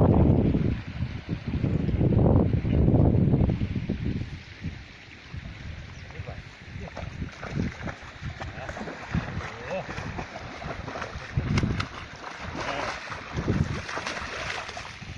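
Wind buffeting the microphone in two loud gusts in the first few seconds, then a large Kangal dog wading and splashing through a shallow, muddy creek, with scattered splashes near the end.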